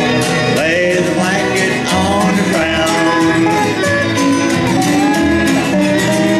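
Small acoustic country band playing a song: guitar, upright bass and fiddle, with a man singing into the microphone.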